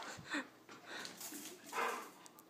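Airedale terriers giving a few short, faint whimpers and yips, the loudest just before the end.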